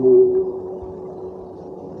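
A man's voice holding the last note of a chanted Sanskrit verse, one steady pitch that fades away over about a second and a half.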